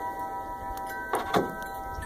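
A dog treadmill's motor running with a steady whine of several even tones, with two short knocks just over a second in.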